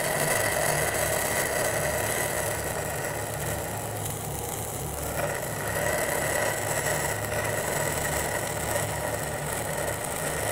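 Stick (SMAW) welding arc from a 3/32-inch E6010 electrode crackling steadily while running a root pass on 2-inch Schedule 80 carbon steel pipe. It eases a little about four seconds in, then picks up again.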